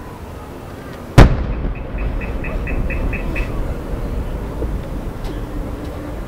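An aerial firework shell bursting with one sharp, loud bang about a second in, followed by a long low rumbling echo. A short run of quick, evenly spaced high beeps follows the bang.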